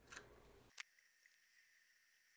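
Near silence: faint handling noise of hands working a memory card reader, with one short click less than a second in.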